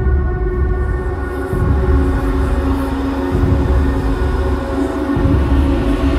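Dark, suspenseful background music: sustained droning tones held over a low pulse that swells about every two seconds.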